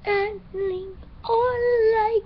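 A young girl singing unaccompanied: two short notes, then a long held note from just past a second in.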